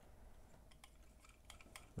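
Near silence, with a few faint small clicks in the second second as a die-cast metal toy car is turned over and handled in the fingers.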